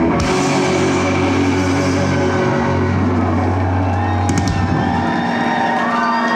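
Live rock band playing loud: electric guitar and bass hold sustained, droning notes over the drums. A couple of sharp hits come about four seconds in, and the held low note changes at the same point.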